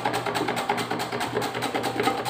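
A raw potato being rubbed over the blade of a stainless steel hand slicer, a quick run of short scraping strokes as thin chip slices are cut off.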